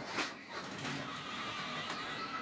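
Live track sound of a multi-truck pileup in a NASCAR truck race: a steady wash of race-truck engine and crash noise with a faint held tone, broken by a couple of short knocks.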